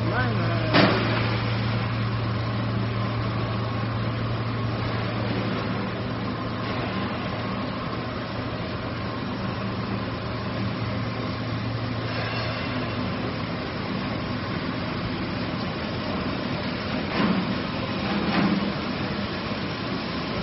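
Three-layer co-extrusion stretch film machine running: a steady machinery noise with a low hum that fades out about two-thirds of the way through. There is a sharp click about a second in and a couple of brief knocks near the end.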